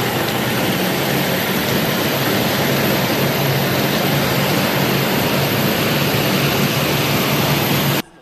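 Tanks and other tracked armoured vehicles driving past in a column: loud, steady engine and track noise with a low engine drone underneath.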